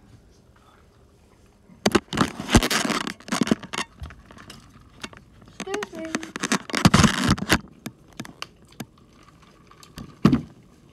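Handling noise on a phone's microphone: rubbing, scraping and crackling as the phone is grabbed and moved, in two loud stretches with sharp clicks between them.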